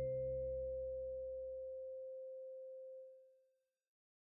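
The last note of the closing music ringing out: a single pure tone, with lower notes dying away first, that fades steadily and is gone about three seconds in.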